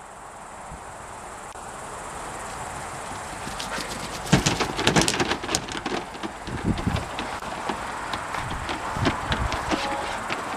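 Dogs' claws clattering and knocking on the ribbed bed liner of a pickup truck as several laikas jump in and move about: an irregular run of sharp clicks and thumps starting about four seconds in, after a rising rustling noise.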